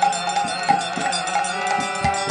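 Kirtan music: a harmonium and a bamboo flute hold sustained notes over a steady beat of hand-cymbal and drum strikes, about three a second.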